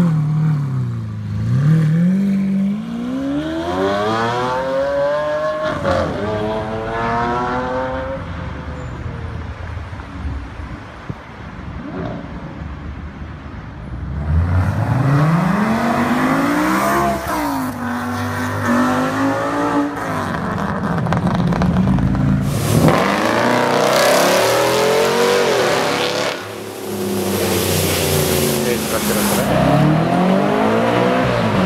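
Several sports cars, one after another. First a Lamborghini Aventador Roadster's V12 is revved up and down a few times. From about the middle, a BMW M6 accelerates away with its engine note climbing. Near the end another car accelerates hard.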